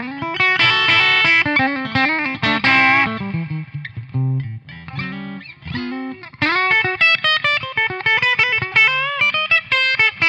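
Fender 50th Anniversary Deluxe Stratocaster electric guitar played through a Joyo Ironman Rated Boost pedal with its low EQ turned up. It plays a lead run of quick single notes with string bends, lightly overdriven, with loads more bottom end. The playing thins out briefly about four seconds in, then picks up again.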